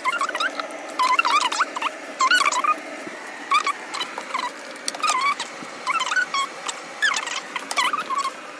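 A young woman's talking, fast-forwarded several times over so that it comes out as high, squeaky, rapid chatter with no words to be made out.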